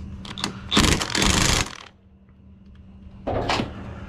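Cordless impact wrench hammering for about a second as it runs a harness bar mounting bolt tight.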